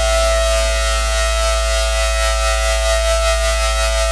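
Techno track in a breakdown: a sustained synthesizer chord with a siren-like held tone over a steady deep bass drone, with no drums.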